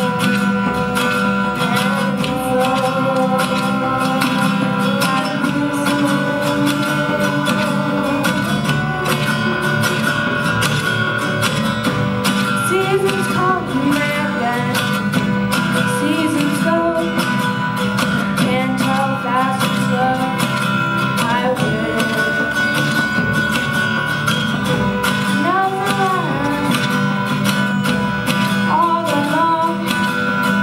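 Two acoustic guitars strumming a folk song live, with voices singing phrases at times over the chords.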